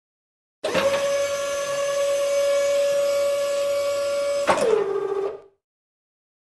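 A steady machine-like whine held at one pitch starts suddenly. About four and a half seconds in, a click is followed by the pitch dropping lower, and the sound fades out within the next second.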